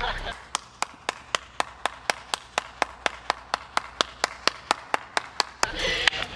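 A steady run of sharp, evenly spaced clicks, about four a second, starting about half a second in and stopping shortly before the end.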